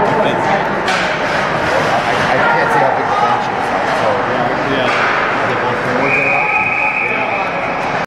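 Spectators talking and calling out in an ice hockey rink, with sharp knocks of stick or puck on the boards about a second in and near five seconds. A long, steady, high referee's whistle from about six seconds on, as play stops.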